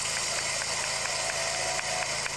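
Audience applause: a dense, steady patter of many hands clapping that starts suddenly.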